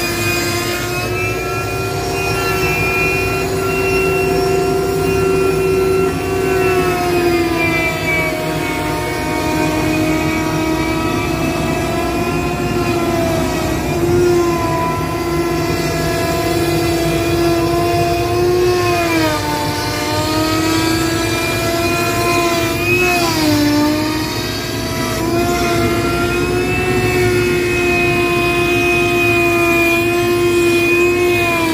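Router mounted in a router table running steadily at high speed, its bit trimming the edge of a half-inch wood panel along a template. The motor's whine sags in pitch for a moment as the cut loads it, about seven seconds in and twice more after the middle, each time picking back up.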